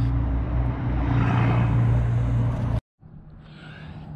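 A steady, low motor drone that stops abruptly near the end, leaving a much quieter background.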